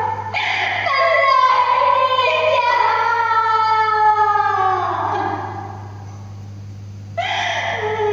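A woman singing a long, wavering phrase in Vietnamese tuồng (classical opera) style, drawing out a high note that bends and falls away about five seconds in. After a short pause she starts a new phrase near the end.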